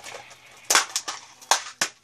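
A small packet of number eight sheet-metal screws being handled and opened: about four sharp clicks and rattles, the last two about half a second and a quarter second apart.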